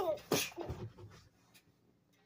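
A boy laughing in loud, breathy bursts, two strong ones in the first half second, trailing off into weaker breaths by about a second and a half.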